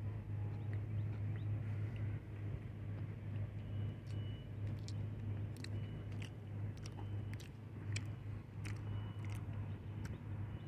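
A person chewing a soft raspberry-jam-topped cookie, with small wet mouth clicks, over a steady low hum.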